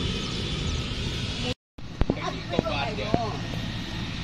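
Steady drone of a distant helicopter's engines and rotor, which cuts off abruptly about a second and a half in. After a short gap, people's voices come in over a continuing steady background drone.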